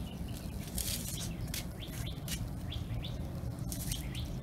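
Small birds chirping in short, high, repeated notes, over a steady low rumble and a few scattered clicks.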